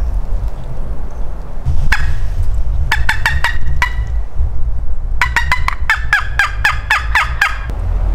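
Wild turkey yelping: a single note, then a short run of about five, then a longer run of about a dozen evenly spaced notes, each breaking downward in pitch. A steady low rumble runs underneath.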